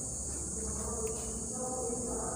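Quiet room tone with a steady high-pitched hiss and a faint low hum.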